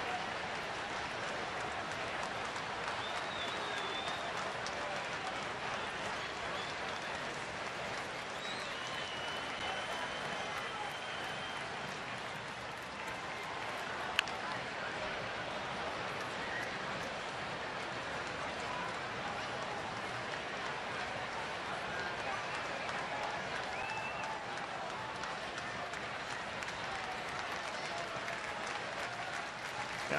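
Steady noise of a large ballpark crowd: chatter, scattered calls and clapping. About halfway through comes one sharp crack, a bat hitting a foul ball.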